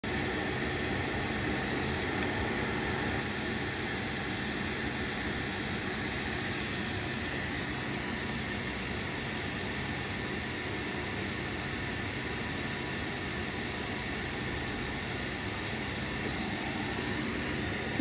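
A steady, unchanging machine hum with a faint high whine over it.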